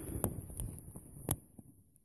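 Two sharp clicks about a second apart, the second one louder, over a faint low rustle that fades away.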